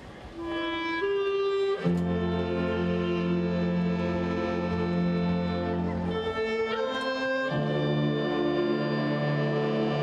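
Concert wind band playing: one or two quiet held notes, then about two seconds in the full band comes in with loud sustained chords and a strong low bass, moving to a new chord after about seven and a half seconds.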